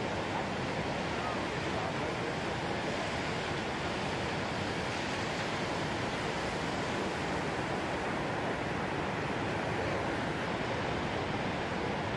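Ocean surf from big waves breaking on a reef and washing in: a steady rushing noise with no single crash standing out.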